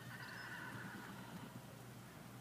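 A horse whinnying once, a faint call about a second long that ends about a second in.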